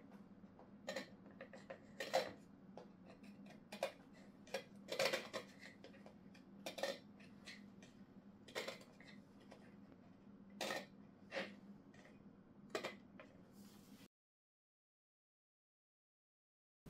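Scattered light clicks and knocks of small hard parts being handled: the circuit board pressed down onto its screw guide rods on the plywood back plate and its cable being fitted, about a dozen irregular taps. The sound stops abruptly about two seconds before the end.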